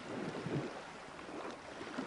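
Sea surf washing up on a sandy beach, a steady wash with soft swells, with wind buffeting the microphone.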